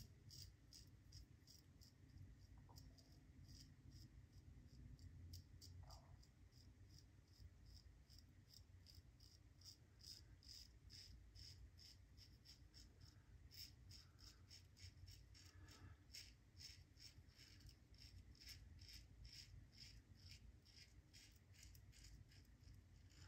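Fine DE5 double-edge safety razor with a Feather blade scraping through lathered two-and-a-half-day stubble: faint, short scratchy strokes repeating about twice a second.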